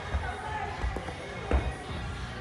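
Bare feet thudding on a carpeted gym floor as a gymnast takes off and lands tricking moves such as an aerial and a swipe: a few short thumps, the loudest about one and a half seconds in.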